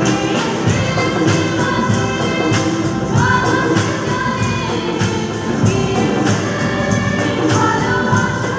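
A group of women singing a religious song together, accompanied by acoustic guitars strummed in a steady rhythm.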